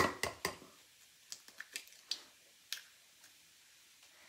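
Egg cracked on a small glass bowl and opened into it: a few sharp clicks in the first half second, then scattered light ticks of shell and fingers against the glass.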